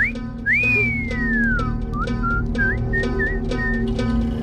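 A man whistling: a short rising note, then a long note that rises and slides down in pitch, then a few short notes. Background music with a steady beat plays underneath.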